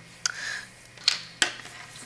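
A few sharp clicks of a small plastic ink-pad case and its lid being handled and set down on a cutting mat, with a brief rustle of card after the first click.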